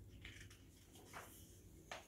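Near silence, with a few faint brief rustles as a picture-book page is turned by hand.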